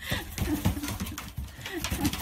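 European badger making quick, short, low grunting calls, several a second, right at the microphone.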